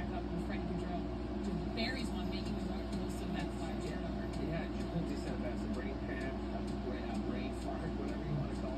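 Television sports broadcast voices, faint and indistinct, with a steady low hum underneath.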